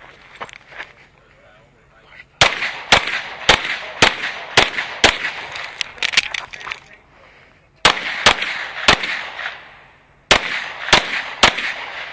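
Competition race pistol firing at steel plate targets. A run of about six quick shots, each about half a second apart, starts a couple of seconds in. After a pause come two more quick groups of about four and three shots.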